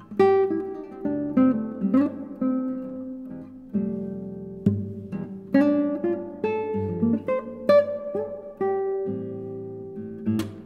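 Solo nylon-string classical guitar built by Stephan Connor, played fingerstyle in a blues tune: plucked chords and single notes, each struck sharply and left to ring and die away, about one new attack a second.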